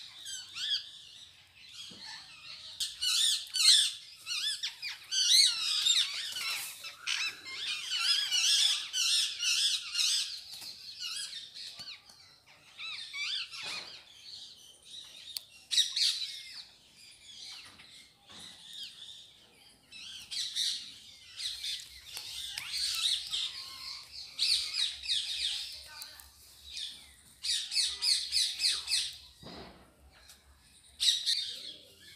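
Many small birds chirping and squawking in a busy chorus of high calls, with rapid trilled runs. The calling peaks a few seconds in and again near the end.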